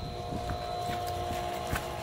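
Electric pool pump motor running with a steady hum, pumping water through the filter. A few footsteps sound on wood-chip mulch.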